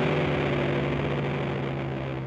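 A sustained chord from the rock band's guitars rings out after a final hit, holding one low steady pitch and slowly fading away.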